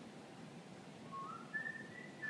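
A person whistling a few short notes that step upward in pitch, starting about halfway in, over faint room tone.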